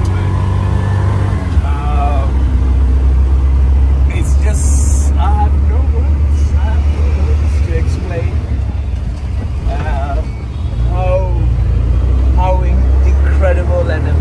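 Auto-rickshaw's small engine running with a steady low rumble, heard from inside the open passenger cabin in traffic; it eases off briefly about ten seconds in and then picks up again. A short hiss sounds about four and a half seconds in.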